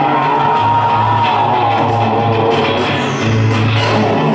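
A rock band playing live and loud, electric guitar to the fore over steady bass and drums.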